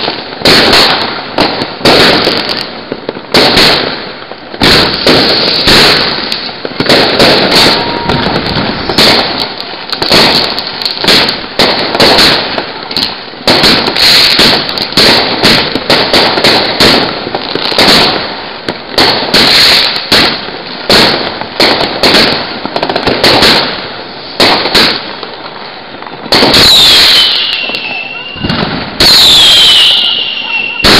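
Fireworks and firecrackers going off in a rapid, unbroken barrage of bangs and crackles, several a second. Near the end two whistles fall in pitch.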